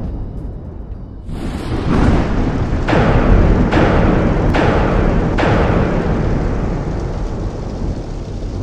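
Thunderstorm sound effect: a deep rumble, then steady heavy rain from about a second in, with four sharp thunder cracks close together between about three and five and a half seconds in.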